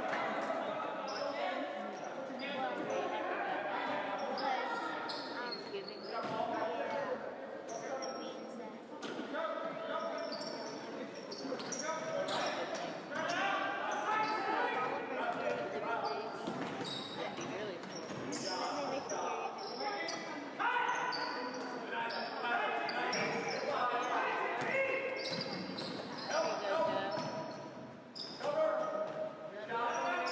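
Basketball dribbled and bounced on a hardwood gym floor during a youth game, with indistinct voices of players and spectators echoing in the large gym.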